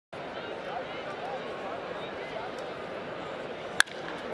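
Steady ballpark crowd murmur, then near the end a single sharp crack of a wooden bat meeting a pitched baseball: solid contact that drives the ball hard into the gap.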